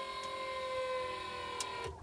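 Electric hydraulic pump of a Nissan Cube Autech sloper's kneeling system running with a steady whine as it lowers the rear of the vehicle, its pitch sagging slightly; it cuts off just before the end.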